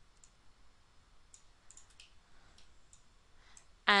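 Faint, scattered computer mouse clicks, a handful of single ticks spread across a few seconds.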